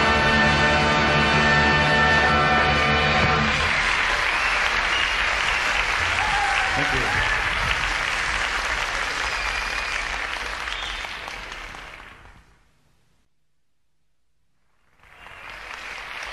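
A live band's final held chord, then an audience applauding that swells and fades away about three-quarters of the way through to near silence. The crowd sound comes back just before the end.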